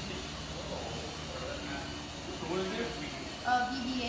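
Steady whir of the small electric drive motor spinning a robot ball's caged sphere on a test stand, with quiet voices talking over it in the second half.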